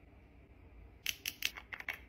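After about a second of near silence, a quick run of about eight light clicks and taps as small plastic makeup containers and a brush are handled.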